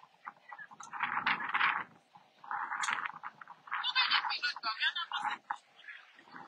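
People's voices in a walking crowd, coming in three loud bursts of talk with short pauses between, the last one high and wavering.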